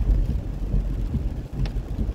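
Steady low rumbling background noise with no speech. It is the same rumble that runs under the talk throughout the recording.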